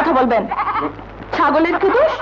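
Two quavering, goat-like bleats: one at the start and another about a second and a half in.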